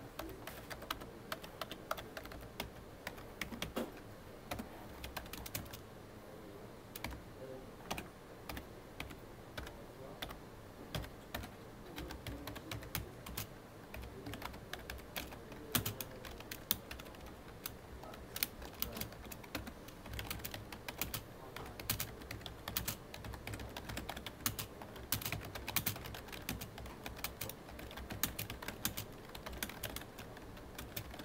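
Continuous two-handed typing on a full-size computer keyboard: a dense, unbroken run of key clicks and keystrokes.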